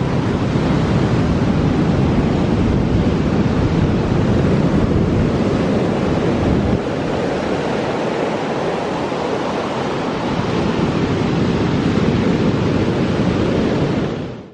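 Surf breaking and washing up a sandy beach: a steady rush of waves that eases slightly about seven seconds in and builds again.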